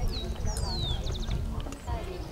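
Birds calling: a long falling whistle about half a second in, then a quick run of four short high notes, over the chatter of people's voices.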